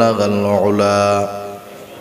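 A man chanting a devotional naat verse, holding one long steady sung note that fades out about a second and a half in.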